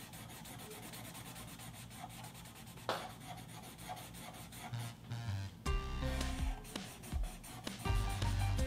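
Sharpie permanent marker rubbing back and forth on paper, colouring a stripe in solid black. Light background music underneath, growing louder about six seconds in.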